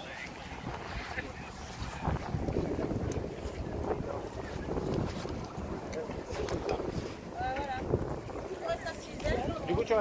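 Wind rumbling on the microphone, with people's voices in the background that become clearer near the end.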